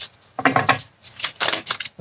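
A deck of tarot cards being shuffled and handled by hand: a run of short slaps and rustles of card against card.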